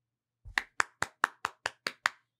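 Hand claps close to the microphone: a quick, steady run of about eight sharp claps, roughly five a second, starting about half a second in.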